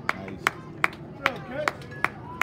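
One person clapping hands in a steady rhythm, about two and a half claps a second, with faint voices behind.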